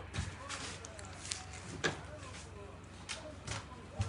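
Soft footsteps and a few scattered light knocks and clicks, with faint muffled voices underneath.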